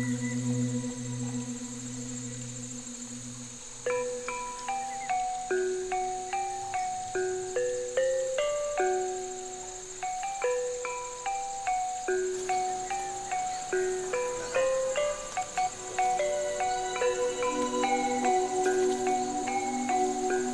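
Background music: soft held tones at first, then from about four seconds in a slow melody of short struck notes, each ringing and fading.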